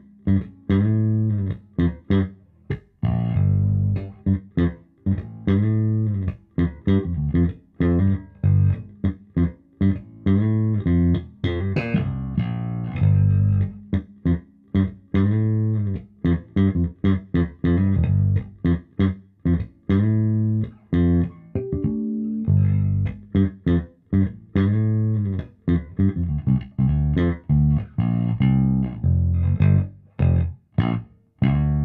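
Fender Boxer Series Precision Bass, an electric bass with P and J pickups, playing a busy bass line of short plucked notes with brief gaps between phrases. Both pickups are full on, the tone control is rolled back to about 70–75% and the TBX tone expander is off: a warm setting with the brightness taken down.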